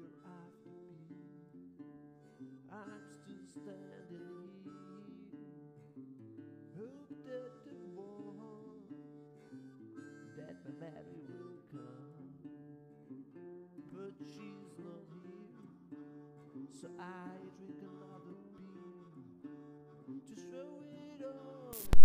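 Quiet background music of plucked and strummed guitar, with a sudden loud burst of noise right at the very end.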